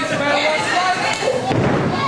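A thud of a wrestler's body hitting the ring mat, over shouting crowd voices.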